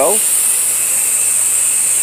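Steady hiss of a soft-wash spray wand shooting a low-pressure stream of roof-cleaning solution up onto the shingles.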